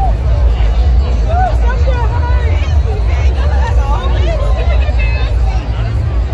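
Dense crowd chatter: many voices talking at once, none standing out, over a steady low rumble.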